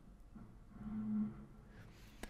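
A faint, short low hum from a man's voice, like a murmured "hmm", about half a second in and lasting under a second, over quiet room tone.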